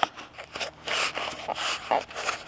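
Foam pipe insulation being pressed onto a pipe and worked along it by hand: a few soft, scratchy rubbing and crunching scrapes of foam against the pipe.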